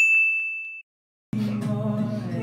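A single bright ding, a bell-like editing sound effect that rings on one tone and fades within about a second, followed by a brief silence. About a second and a half in, acoustic guitar music and voices begin.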